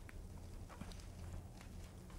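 Quiet room tone with a steady low hum and a few faint, soft ticks as the pages of a hand-held Bible are turned.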